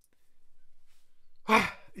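A man's loud, breathy sigh of relief about one and a half seconds in.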